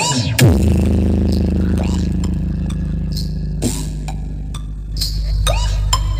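Large mobile disco sound system stack with bass bins and horn-loaded cabinets playing a loud bass-heavy sound-check track: a falling sweep drops into one long sustained deep bass note, with short sweeping effect hits above it every couple of seconds.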